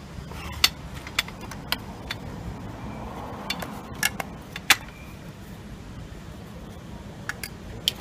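Evac+Chair 600 AMB evacuation chair being folded closed: scattered sharp metal clicks and clacks from its tubular frame and latches, about nine in all.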